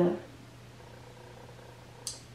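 A woman's drawn-out 'uh' trailing off just after the start, then a quiet room with a steady low hum.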